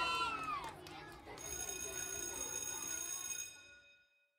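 Children's shouting voices trail off in the first second, then a steady ringing tone made of several pitches holds for about two seconds and fades away.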